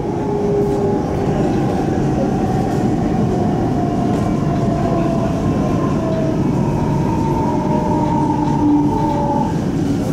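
Interior running noise of a High Capacity Metro Train, an electric suburban train, heard from inside the carriage: a steady rumble of wheels on rail, with several faint whining tones slowly shifting in pitch.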